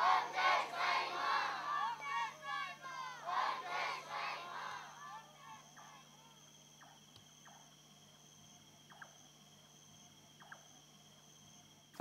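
A crowd of many voices calling out together, fading out about five seconds in. After that only a faint steady hum with a few small clicks remains.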